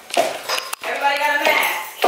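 A woman's voice calls out briefly, with a short high clink about half a second in.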